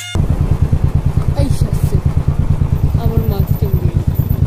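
Motorcycle engine running steadily while riding, heard as a fast, even low pulsing.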